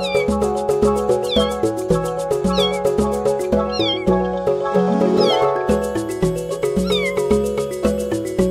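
A young kitten meowing about six times in short, high-pitched calls, calling for its mother cat, over background music with a steady beat.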